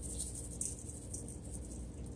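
Dried herb seasoning shaken from a plastic shaker onto raw chicken in a stainless steel bowl, heard as a few faint, soft rustling shakes over a low steady hum.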